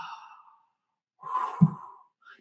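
A man's audible breathing: one breath trailing off at the start, a pause, then another breath with a short voiced catch in the middle.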